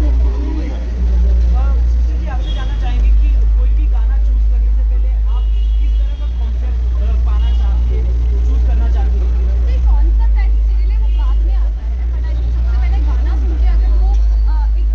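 Voices and chatter over a loud, steady deep rumble, which dips briefly about six and twelve seconds in.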